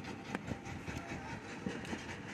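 A few light knocks and taps from hand-moulding wet clay bricks in a wooden mould, over a steady background rumble.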